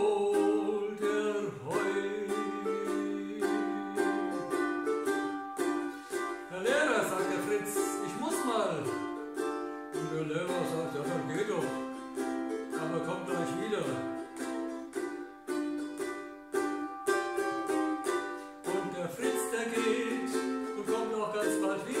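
Ukulele strummed in a steady rhythm, chords ringing between the strokes. A man's voice comes in briefly over it, wordless, about a third of the way through and again past the middle.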